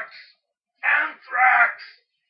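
A man's voice letting out two loud wailing cries in quick succession, about a second in, in mock agony.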